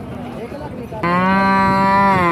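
A cow mooing: one loud, long call that starts about a second in and holds a steady pitch, over a murmur of voices at a livestock market.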